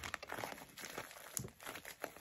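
A plastic bubble mailer being crinkled and pulled open by hand: faint, uneven crinkling with a few sharper crackles.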